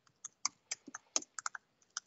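Typing on a computer keyboard: a string of quiet, irregular key clicks, about ten in two seconds.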